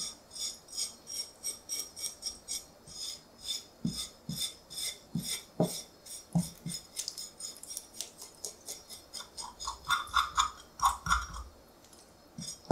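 Kitchen knife held flat scraping the slime off a white tilefish's skin in rapid, evenly spaced strokes, about three or four a second, leaving the thin scales on. A few soft knocks against the wooden cutting board come between about four and seven seconds in.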